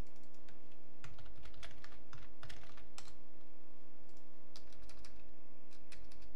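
Typing on a computer keyboard: irregular key clicks, some in quick runs, as a web address is typed, over a steady low hum.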